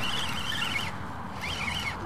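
Spinning reel's drag giving line in two high, wavering whines, the second one short, as a hooked fish pulls.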